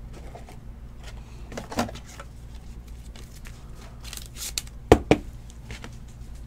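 Trading cards being handled on a tabletop: soft rustling and shuffling, with two sharp clicks close together about five seconds in, over a steady low hum.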